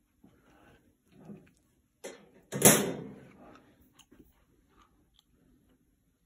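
A loud, sharp knock about two and a half seconds in, trailing off over about a second, with a lighter click just before it and faint shuffling and ticks around it.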